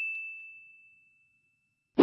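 A single bright ding sound effect, marking an inserted on-screen correction card. It rings as one clear tone and fades away over about a second, leaving dead silence.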